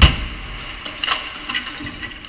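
2015 Kia Sportage striking a rigid full-width barrier at 50 km/h in a frontal crash test: one very loud crash at the start, followed by a few smaller sharp clatters of broken parts and debris settling.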